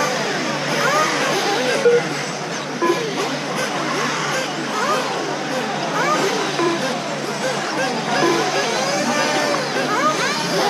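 Several electric RC off-road buggies racing, their motors whining in overlapping tones that rise and fall in pitch as they accelerate and brake around the track.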